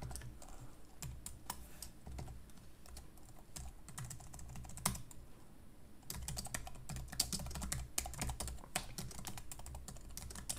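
Computer keyboard typing: irregular key clicks, sparse at first and coming faster in the second half.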